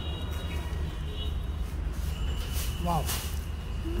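Steady low background hum of a busy shop, with faint steady high tones above it; a woman exclaims 'wow' briefly near the end.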